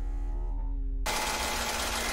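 Toyota AE86 Trueno's twin-cam engine as an anime sound effect: a low steady drone for about a second, then a sudden cut to a loud, rasping engine note at high revs.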